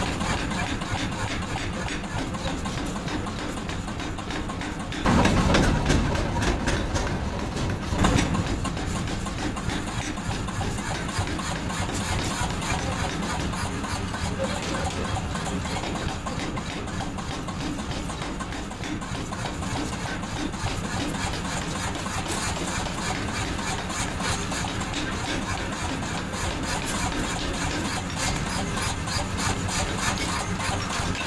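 Forging power hammer running steadily as a red-hot bar is forged into a chisel, with a louder stretch about five seconds in and a sharp bang about eight seconds in.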